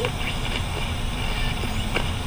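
Steady hiss of television static, the even rushing noise of a TV showing snow between channels.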